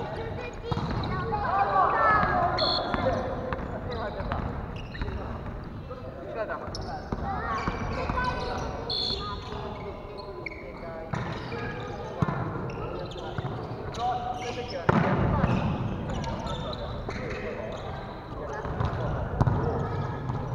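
Volleyball being played on a wooden gym floor: the ball is struck and bounces, shoes squeak, and players call out. The loudest hit comes about fifteen seconds in.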